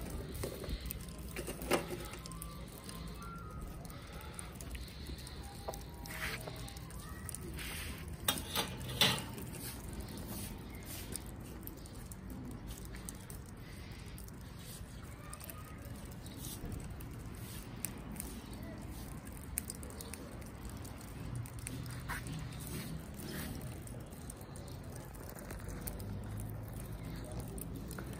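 Lump charcoal burning in an open metal barbecue grill, with scattered crackles and pops as the coals catch and pieces crack, a few louder pops about eight to nine seconds in.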